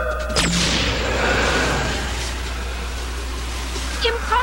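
A sudden sharp crash-like sound effect about half a second in, trailing off into a long fading hiss, over background music.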